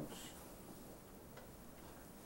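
Quiet meeting-room tone: a steady faint hiss, with one faint tick about one and a half seconds in.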